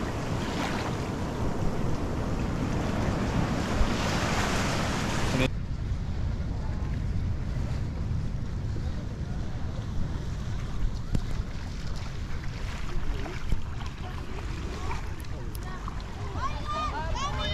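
Small waves washing in through black mangrove roots in shallow water: a steady rushing hiss that cuts off sharply about five seconds in. After that, a quieter rumble of wind on the microphone.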